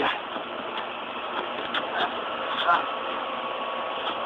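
Several brief yells and grunts from wrestlers trading blows, with a few short sharp hits, over a steady outdoor hiss.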